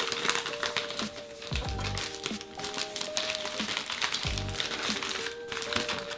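Thin plastic specimen bags crinkling as they are handled and opened, under background music with a melody and a slow beat.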